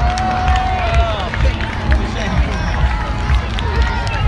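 Music with a steady bass beat, about two thumps a second, played over public-address loudspeakers to an outdoor crowd. The announcer's voice is heard through the loudspeakers, drawing out a word in the first second.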